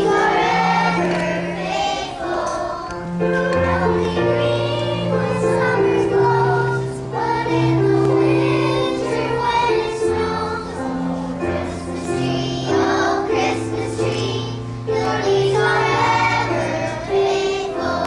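A second-grade children's choir singing together, over instrumental accompaniment that holds steady low notes, changing every second or two.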